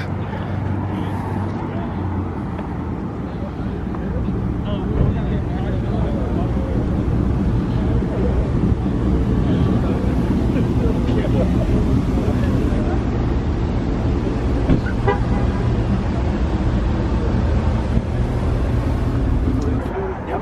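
Pickup truck engines running with a steady low engine note as the trucks roll slowly past.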